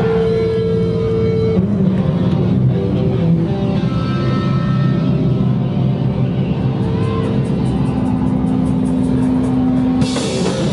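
Live hardcore punk band playing loud: heavily distorted guitar and bass drone on long held notes, a dense engine-like wall of sound. A fast high ticking comes in during the second half.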